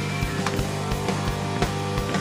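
A rock trio playing live: electric bass guitar holding low sustained notes, electric guitar, and a drum kit keeping a steady beat.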